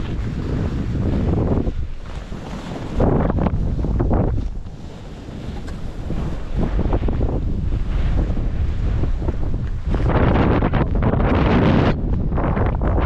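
Wind buffeting the microphone of a skier's camera on a fast downhill run, mixed with skis sliding over firm snow. The rush surges louder about three seconds in and again near the end.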